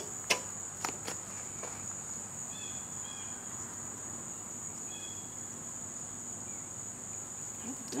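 Insects trilling steadily in a high, continuous band. Two sharp clicks come within the first second.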